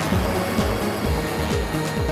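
Background soundtrack music with a steady electronic beat, about two kick-drum thumps a second over a held bass line.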